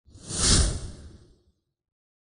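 A whoosh transition sound effect: one swell of rushing noise over a low rumble, building to a peak about half a second in and fading away by about a second and a half.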